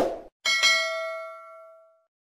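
Subscribe-button sound effect: a mouse click, then a notification bell ding about half a second in that rings and fades away over about a second and a half.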